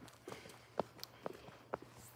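Footsteps on a concrete sidewalk at a walking pace, about two steps a second.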